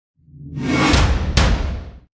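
Show-intro logo sting: a swelling whoosh sound effect with two sharp hits about half a second apart over a deep rumble, fading out at the end.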